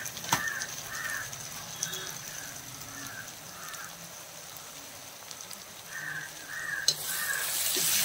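Onions and tomatoes frying quietly in a cast-iron kadai, with a crow cawing in the background: a run of caws about two a second over the first few seconds, then three more near the end. The frying gets louder near the end as the mix is stirred.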